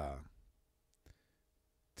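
A man's drawn-out hesitant "uh" trailing off, then near silence with a single faint click about a second in.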